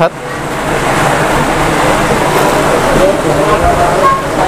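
Loud, steady rushing background noise with faint voices of people talking under it.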